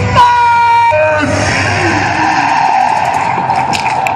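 Horror show soundtrack: a shrill held voice-like note for about a second, then a long harsh screech.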